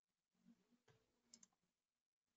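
Near silence with a few faint clicks: one a little under a second in, then two in quick succession shortly after.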